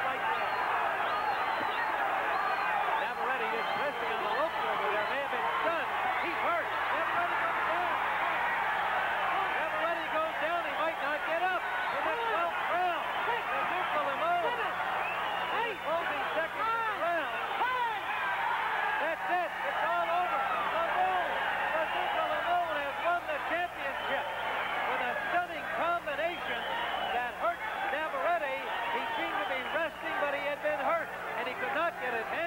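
Boxing arena crowd shouting and cheering, many voices overlapping into a continuous din. It comes through a narrow-band old broadcast recording with a low steady hum.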